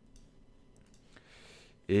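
A few faint computer mouse clicks, the colour choice being confirmed in Photoshop's colour-picker dialog.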